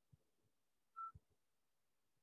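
Near silence, broken about a second in by one short, faint high beep, with a few soft low thumps around it.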